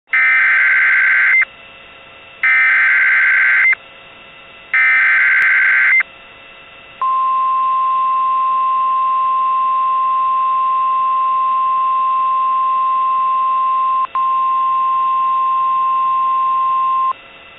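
Emergency Alert System SAME header: three bursts of warbling digital data tones, each just over a second long and about a second apart, then the steady 1050 Hz NOAA Weather Radio warning alarm tone, which drops out for an instant about fourteen seconds in. The alert signals a severe thunderstorm warning.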